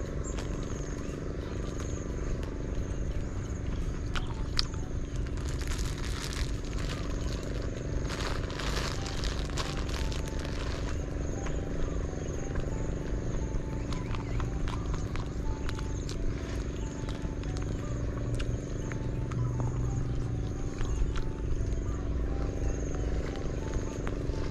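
A small engine runs steadily with an even hum. A thin high whine comes and goes over it, and there is a stretch of crackling rustle from about six to eleven seconds in.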